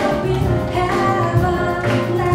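A woman singing with a live jazz combo: held, slowly moving vocal notes over a walking double bass, drums and piano.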